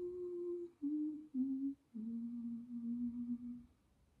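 A woman humming quietly to herself: a few held notes stepping down in pitch, the last one held longest, then she stops shortly before the end.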